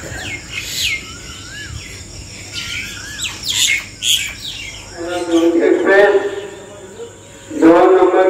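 Birds chirping with quick, sweeping high calls and a short wavering whistle. From about five seconds in, a voice comes in over them.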